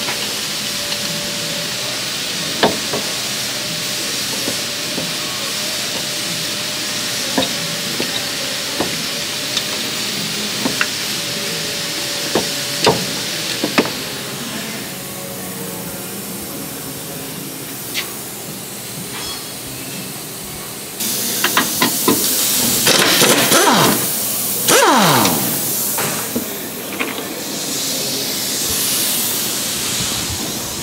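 Mechanic's tool work: scattered sharp clicks and knocks of wrenches on metal over a steady hiss, then, about two-thirds through, several seconds of a louder, rapid rattling from an air impact wrench.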